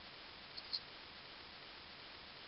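Faint steady hiss of background noise. Less than a second in it is broken by two brief high-pitched squeaks close together, the second louder.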